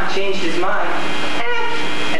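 Stage performers' voices in short, drawn-out phrases whose pitch rises and falls, sung or declaimed, over a steady low hum.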